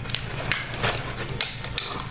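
Plastic Lunchables tray and candy wrapper being handled: a handful of light, separate taps and crinkles spread across the two seconds.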